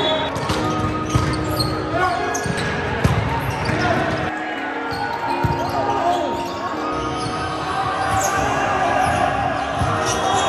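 Indoor volleyball play: the ball being struck and hitting the hardwood gym floor in repeated sharp knocks, with sneakers squeaking and players calling out, over background music.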